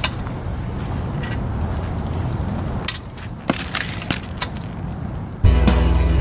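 Hand ratchet tightening a car's lug nuts: a few scattered sharp clicks over a steady low rumble. Background music comes in loudly near the end.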